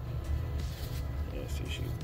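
Gloved hands rubbing and turning a damp dirt ball (a dorodango being dusted with powdery soil), a faint soft scraping, over a steady low hum. A man's voice begins near the end.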